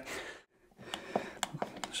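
Faint scattered clicks and scraping of a screwdriver working the earth-terminal screw in a plastic electrical back box as the CPC conductors are tightened in. The sound drops out to complete silence briefly just under half a second in, then resumes.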